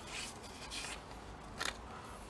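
Paper and card pieces being picked up and handled: a few short rustles, then a brief sharp snap or tap about three-quarters of the way through.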